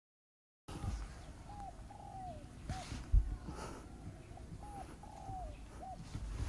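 A bird calling faintly in short rising-and-falling notes, about once a second, after a brief moment of dead silence at the start. A single low thump comes about three seconds in.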